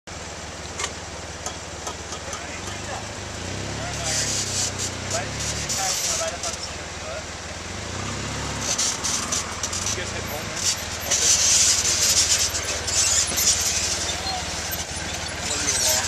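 Polaris RZR side-by-side engine running and revving in two spells as the vehicle crawls over slickrock, with bursts of hissy noise in between.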